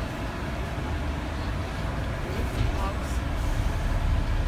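Steady low engine and road rumble inside a London double-decker bus as it drives along, growing a little louder toward the end.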